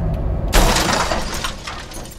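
Road noise inside a car at highway speed, cut off about half a second in by a sudden loud crash of shattering glass that fades over about a second.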